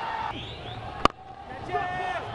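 Stadium crowd noise, then about a second in a single sharp crack of a cricket bat striking the ball, the loudest moment, followed by the crowd going on.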